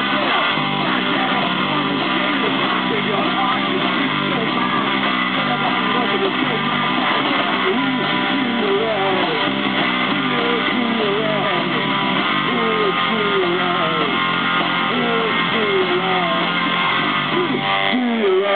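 A punk rock band playing live: strummed electric guitar over bass guitar and drums, steady and loud.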